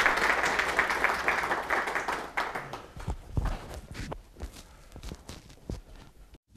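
Audience applause in a small room that dies away after about three seconds, leaving a few scattered knocks and footsteps as people move about.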